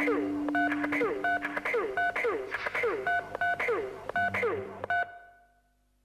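Song outro of repeated telephone keypad tones, a two-tone beep about twice a second, each with a falling electronic swoop. It fades and stops about five seconds in.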